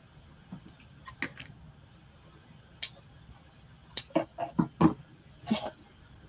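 Scissors snipping fabric strips and the fabric being handled on a cutting mat: a scatter of short, sharp clicks, with a quick run of snips about four to five seconds in.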